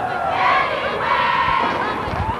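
Football crowd in the stands shouting and yelling, many voices overlapping, as a play gets under way.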